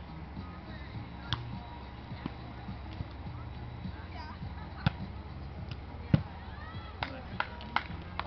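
A volleyball being struck by hands and arms: several sharp slaps spread through, the loudest a little after six seconds in, three in quick succession near the end. Faint distant voices over a steady low rumble run underneath.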